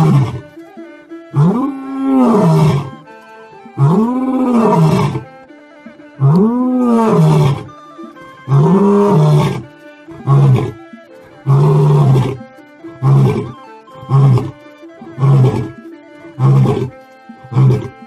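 Lion roaring in a full bout: four long moaning roars, each rising then falling in pitch, followed by a quickening run of short grunts. Steady music tones sound underneath.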